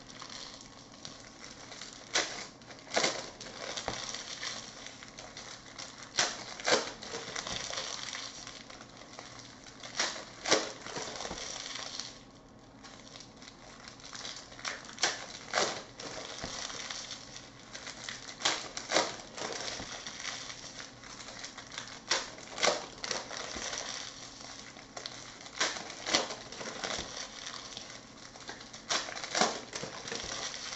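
Topps Chrome trading cards handled and sorted by hand: irregular sharp clicks and taps as cards are flicked and set down, over a steady crinkly rustle, with a brief lull about twelve seconds in.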